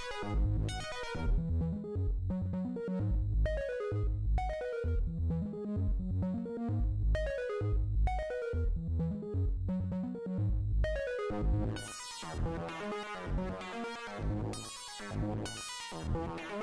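Kairatune software synthesizer playing a repeating arpeggiated pattern over a pulsing bass line, from its 'Discrete Dirt 4' arp preset. The tone turns brighter and fuller about twelve seconds in as its settings are tweaked.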